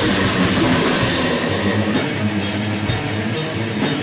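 Death metal band playing live: distorted electric guitars and drums. A cymbal crash rings through the first second or so, then fast, steady drum hits drive the riff.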